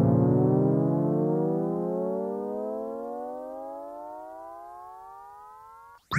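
Synthesizer sound in a reggae recording: a chord of several tones glides slowly and evenly upward in pitch while fading out, then stops at the end.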